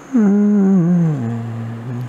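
A man's voice humming a long closed-mouth 'mmm' that falls in pitch and drops lower about halfway through, then stops.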